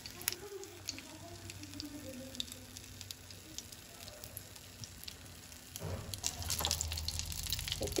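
Slices of tikoy (sticky rice cake) frying in a little oil over low heat: a soft, even sizzle with scattered small pops and crackles. It grows louder about six seconds in.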